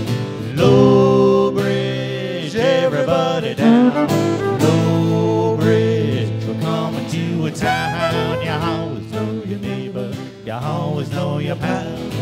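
Live acoustic folk music: an acoustic guitar being strummed with a fiddle playing along.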